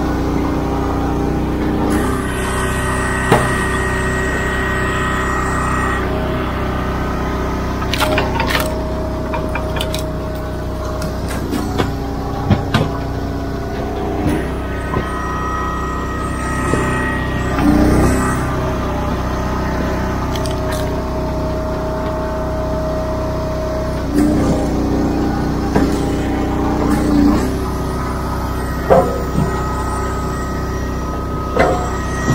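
Gas-engine commercial log splitter running steadily, its note changing about three times as the hydraulic ram loads up and drives rounds of oak and cherry through the wedge. Sharp cracks and knocks of wood splitting and split pieces dropping onto the steel table come every few seconds.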